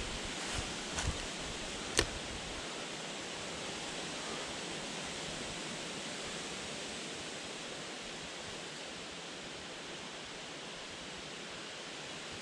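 A steady, even rushing noise, with a few light clicks in the first two seconds; the sharpest click comes about two seconds in.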